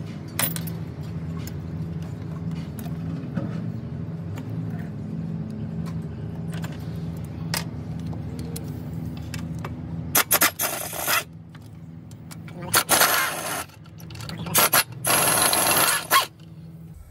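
Snap-on cordless impact wrench with a 13 mm socket, run in several short, loud bursts in the last six seconds as it backs out the bolts holding a DD15 intake throttle valve. A steady low hum runs underneath before the bursts.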